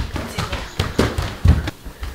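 A quick run of knocks and thumps, the heaviest about one and one and a half seconds in.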